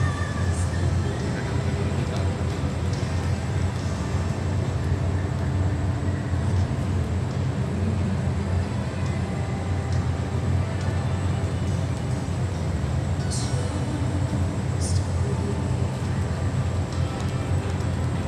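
Steady low rumble of indoor arena background noise, with faint music and voices mixed in.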